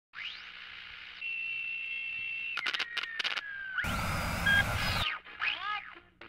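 Electronic intro effects at the start of a rock song, with no band playing yet. Whistling tones glide up and down over faint hiss, a steady high whistle holds for over a second, and a few crackling clicks follow. A burst of static with a falling whistle comes after that, and a short chirp drops in pitch near the end.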